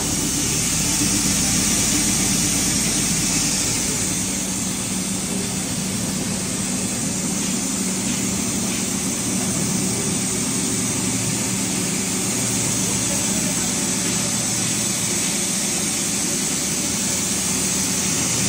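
Electric-motor-driven daliya (broken-wheat) machine with a khatkhata shaking sieve running steadily under load: a continuous mechanical running noise with a low hum, as grain passes through.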